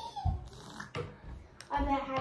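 A baby's voice: a high squealing sound trailing off at the start, then another drawn-out vocal sound beginning near the end, with a few soft knocks in between.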